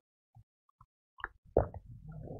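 A man gulping water from a plastic bottle: a few short, faint swallowing sounds, the loudest about one and a half seconds in.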